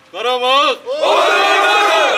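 Soldiers' battle cry: one man shouts a call, and from about a second in the whole squad answers with a loud shout in unison, held for about a second.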